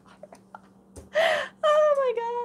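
A woman's sharp gasp about a second in, then a long, high 'ohh' that falls in pitch, a dismayed reaction.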